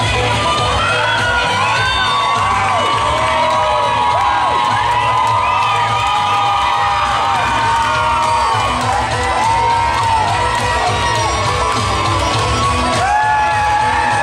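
Audience cheering, whooping and shouting over loud dance music with a steady beat, the high whoops rising and falling throughout.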